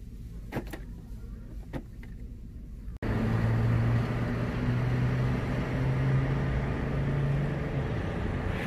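A few light clicks and rattles of plastic-packaged action figures being handled on a store pegboard. About three seconds in, an abrupt cut brings a motor engine running steadily with a low hum, over outdoor noise.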